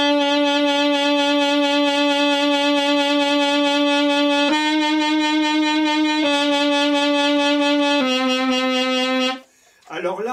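Saxophone holding notes with a vibrato pulsed in even sixteenth notes, a regular wobble that sounds very mechanical: a vibrato practice exercise. Four held notes: a long first one, a step up, back down, then a step lower, ending about half a second before speech resumes.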